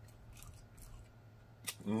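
Faint, sharp wet mouth clicks and smacks of close-miked seafood eating, a few scattered ones and a louder click near the end, followed by a hummed 'mmm' of enjoyment.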